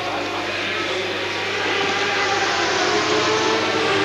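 Racing sidecar outfits with Suzuki 1200cc engines running hard, heard as a steady layered engine drone. It grows gradually louder and rises a little in pitch toward the end as the outfits come closer.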